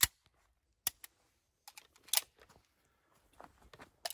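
Sharp mechanical clicks and clacks of a CZ 75B pistol being handled: one loud click at the start, two lighter ones about a second in, a louder clack around two seconds, and faint small clicks near the end.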